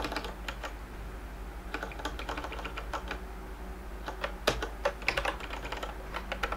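Computer keyboard keys being pressed in irregular short runs of clicks with brief gaps, the sharpest keystroke about four and a half seconds in.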